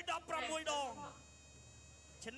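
A voice speaking for about the first second, falling away, then a faint, steady high-pitched whine made of several level tones held together.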